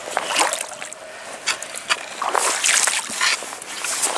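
Shallow canal water splashing and sloshing in several short, irregular bursts as someone wades through it in waders.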